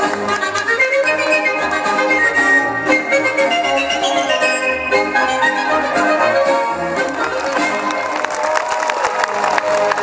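Polish folk music for a krakowiak dance, playing with a steady beat. From about seven seconds in, a patter of sharp clicks sounds over the music.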